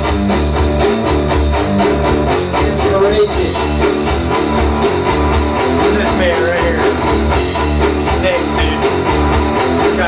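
Rock music with strummed electric guitar over a bass line and a steady beat.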